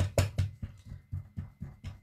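A felt-pad alcohol-ink blending tool tapped rapidly and hard onto Yupo paper on a tabletop, about five knocks a second, loud at first and softer after half a second. This is dabbing alcohol ink to build a mottled background.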